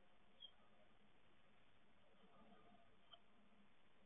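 Faint scratching and rustling of a great tit moving about on its moss nest inside a wooden nest box, with two small sharp ticks, about half a second and about three seconds in.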